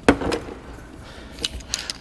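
Plastic wiring harness and connectors being handled: one sharp knock at the start, then a few light clicks and taps in the second half.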